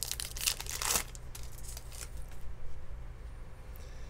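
Foil trading-card pack wrapper being torn open and crinkled, loudest for about the first second, then quieter rustling and crackling as the cards are handled.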